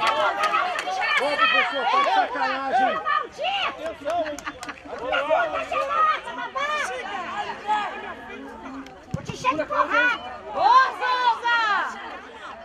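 Several voices on a football pitch calling out and talking over one another, with no words clear enough to make out.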